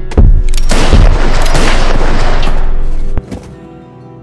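Instrumental beat with two heavy booms and a dense burst of gunfire sound effect. The burst cuts off suddenly a little after three seconds in, leaving the music much quieter.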